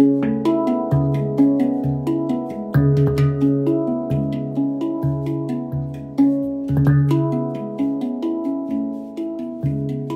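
Handpan played with the hands: ringing, overlapping steel notes in a repeating melodic pattern. A low note comes back every second or two, and a stronger accented strike falls about every four seconds.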